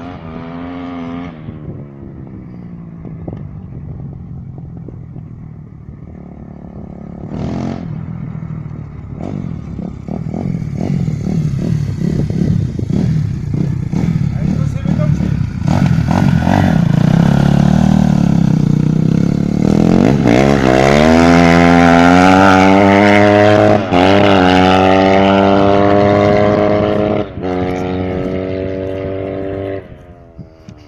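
Kawasaki KX250F single-cylinder four-stroke running through an Akrapovič exhaust with the dB killer insert removed. It blips and runs at low revs at first, then revs climb steeply about two-thirds of the way in and are held high with two brief dips, stopping suddenly at the end.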